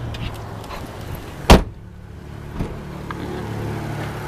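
A car door slams shut once, about a second and a half in, over a low steady hum of a car.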